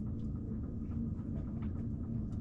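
Sailboat's inboard engine running steadily under way, a low, even drone with a steady hum.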